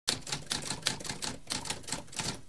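Typewriter keys being struck in a quick, uneven run of sharp clacks, about six a second.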